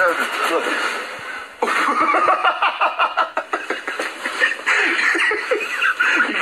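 Men's voices laughing and making wordless vocal noises amid a scuffle, heard through a computer's speakers. A brief lull comes about a second and a half in, then the sound returns louder and busier.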